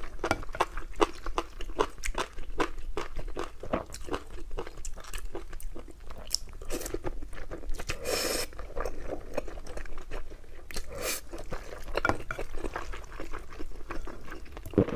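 Close-miked eating sounds: a person chewing a mouthful of saucy rice and glass noodles, with a rapid run of wet smacks and clicks. A longer noisy burst comes about eight seconds in.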